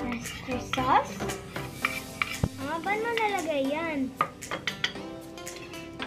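Metal spoon clinking and scraping against a ceramic plate and bowl while scooping thick oyster sauce into mayonnaise, a series of sharp clicks. Background music plays underneath.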